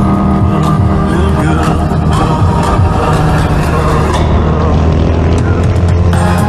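A motorcycle engine running steadily as the bike is ridden at speed, mixed with a music track.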